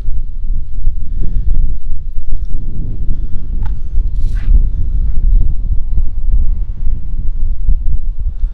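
Wind buffeting a phone's microphone: a loud, uneven low rumble that swells and dips.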